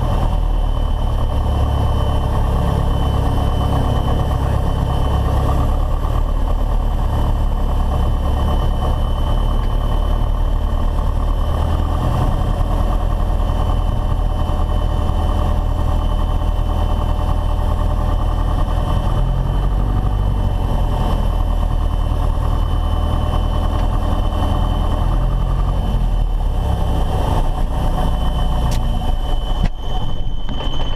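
Piper Cherokee's four-cylinder engine and propeller running at low taxi power, heard from inside the cockpit: a steady idle whose pitch shifts slightly twice in the second half, with a thin high whine above it.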